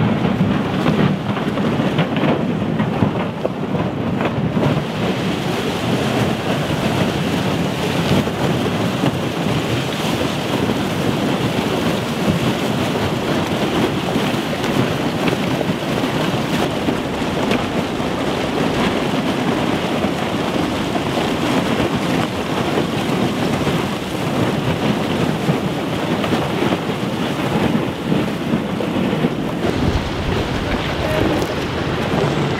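Pack ice crunching and grinding against the bow and hull of a river hotel ship as it forces its way through the ice: a continuous, dense crackling rumble.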